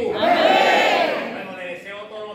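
A congregation's loud shout in reply, one drawn-out cry of many voices that swells and dies away within about a second.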